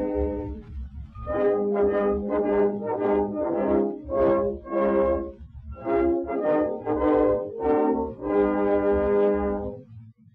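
Brass-led orchestra on an acoustic 78 rpm shellac record playing the closing bars with no singing: a run of short detached chords with brief gaps, then a final held chord that stops near the end, over the disc's low rumble.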